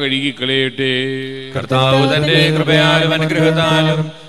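A male voice chanting a Malayalam liturgical prayer of the Syro-Malabar Qurbana over a steady low drone. The chant breaks off briefly about one and a half seconds in, then resumes louder with long held notes.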